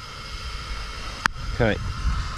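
A faint steady high hum over a low rumble, with one sharp click a little over a second in.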